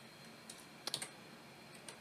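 A few faint computer keyboard key clicks: a single tap, then a quick group of two or three about a second in, and one more light tap near the end.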